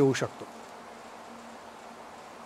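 A man's speech ends in the first half-second, then a faint, steady background buzz and hiss fills the pause.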